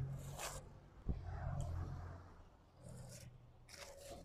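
Thin plastic carrier bags of groceries rustling as they are handled, in several short crinkly bursts, with a single knock about a second in.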